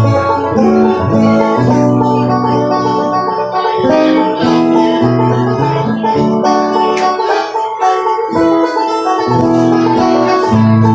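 Acoustic guitar and banjo playing an instrumental tune together, with held chords under picked banjo notes.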